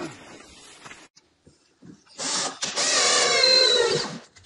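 A small motor starts about two seconds in, after a brief near silence, and runs loudly with a steady whine.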